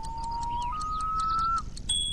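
A thin, pure whistle-like tone held for about a second, then a second held tone a step higher, with faint ticking behind.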